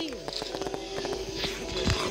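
A firework explosion: one sudden low boom near the end, over steady held tones.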